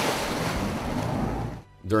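Rush of water and wind from a small boat running fast across open water, with wind buffeting the microphone; it cuts off abruptly near the end.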